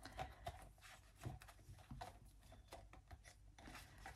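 Faint handling sounds: a clear plastic zip envelope rustling, with soft scattered clicks as it is pressed onto a ring binder's metal rings.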